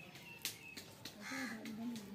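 A chicken gives a harsh, drawn-out call a little over a second in, the loudest sound here, over a run of short crisp clicks.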